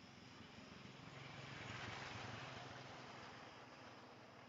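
A small motorbike passing close by and riding away, heard faintly: its engine swells to a peak about halfway through, then fades.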